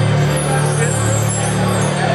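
Live rock band holding a steady, sustained low chord, with no drum hits.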